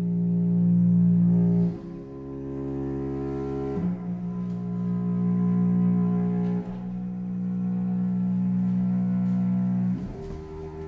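Microtonal contemporary chamber music: low bowed strings hold long sustained notes, the chord shifting abruptly about two, four and seven seconds in.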